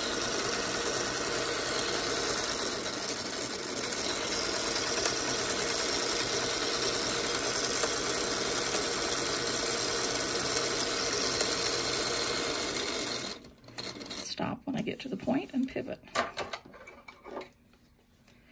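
Mint-green Singer Featherweight sewing machine running at a steady speed, stitching around a fabric appliqué shape, then stopping suddenly about 13 seconds in. After it stops come scattered light clicks and rustles of the fabric being handled.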